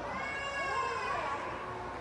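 A young child's high-pitched squeal: one long call that rises slightly and then falls away, with other children's voices lower in the background.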